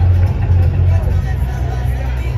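Loud, bass-heavy music from an outdoor street party, its deep bass line pulsing under the chatter of a large crowd.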